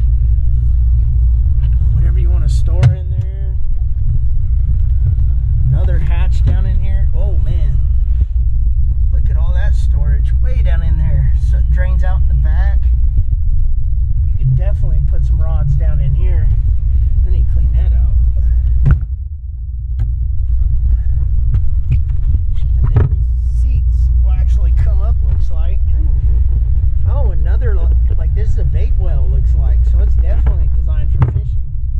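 A loud, steady low rumble throughout, under indistinct voices. A few sharp knocks, the first about three seconds in, come from the latches and hatch lids of a fiberglass boat being handled.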